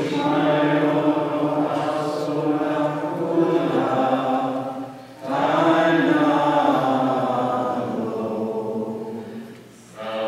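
Maronite liturgical chant sung in long, sustained phrases. A brief pause about five seconds in separates two phrases, and the second fades toward the end.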